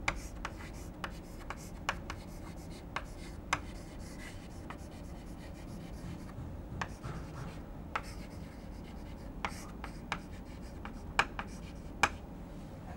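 Chalk writing on a blackboard: irregular taps and short scratchy strokes of the chalk, over a steady low room hum.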